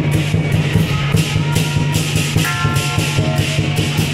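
Loud procession music for the deity-figure troupe: a fast, steady beat with about four crashing strikes a second and a melody line of held notes over it.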